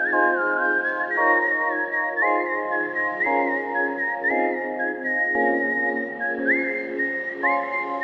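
Background music: a whistled melody that slides up into some of its notes, over sustained accompanying chords that change about once a second.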